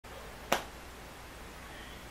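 A single sharp hand clap about half a second in, over faint room tone.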